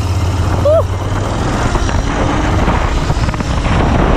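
Royal Enfield 650 parallel-twin motorcycle engine on its stock exhaust, running while being ridden, heard from the rider's seat. A steady low engine note gives way to rising wind rush on the microphone from about a second in.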